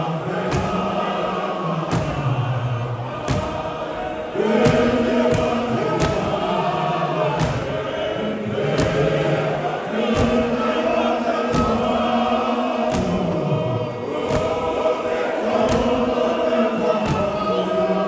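A large men's choir singing an isiXhosa hymn in harmony, the voices holding long notes, over a steady beat of stamping feet from marching in step, about three thumps every two seconds.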